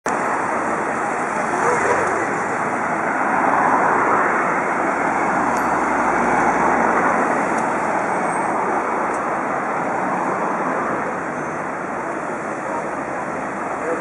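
Steady road traffic at a busy roundabout, cars passing close by, the noise swelling as they go past about two and four seconds in.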